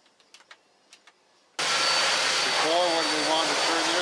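A few faint clicks from typing at a computer keyboard in a quiet office, then an abrupt switch to loud, steady fabrication-shop machinery noise, a dense hiss with a thin high whine through it. A voice is heard over the din.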